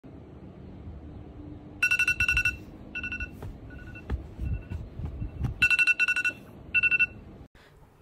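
Smartphone alarm going off: quick bursts of two-tone beeps that start about two seconds in, repeat roughly once a second, and stop a little after seven seconds.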